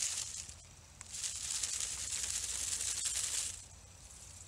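Dried money plant (honesty) seed pods rattling with a dry, papery rustle as the stalk is shaken: a short burst at the start, then a longer one from about a second in that fades near the end.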